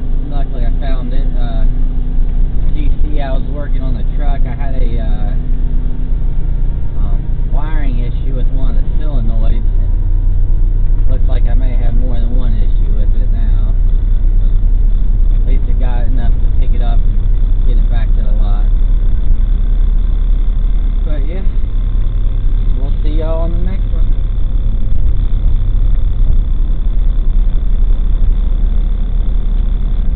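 Tow truck under way, towing a car on its wheel-lift: a steady, loud low rumble of engine and road noise, with indistinct voices over it at times.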